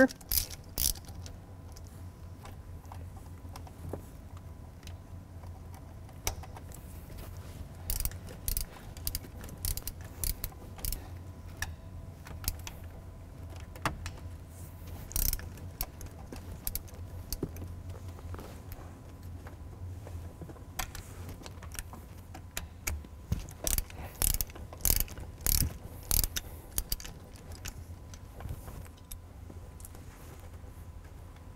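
Hand ratchet with a 13 mm socket clicking in short, irregular runs as the shifter's hold-down bolts are backed out of the T5 transmission, with metal tools and bolts clinking now and then.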